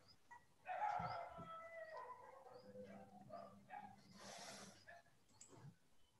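A faint, drawn-out animal call starting about a second in and lasting around two seconds, then a short hiss near the end.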